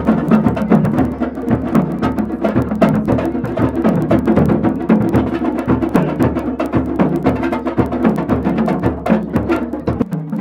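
Drums beaten with sticks by a group playing together: a fast, steady rhythm of sharp stick strikes over deep drum beats. The deep beats stop near the end.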